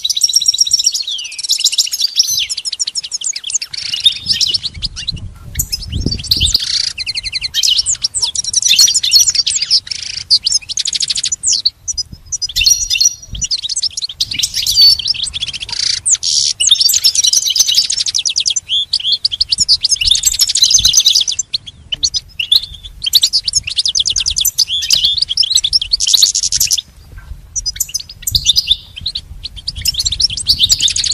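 European goldfinch singing a long, fast song of twittering chirps and trills, broken by a few short pauses.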